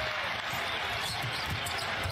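Basketball being dribbled on a hardwood court over a steady background of arena noise, heard through a TV game broadcast, with faint commentary under it.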